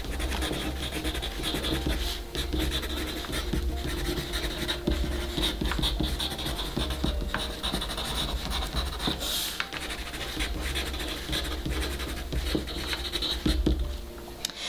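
Wooden pencil writing on a sheet of paper: an irregular run of light scratching strokes, over a low steady hum.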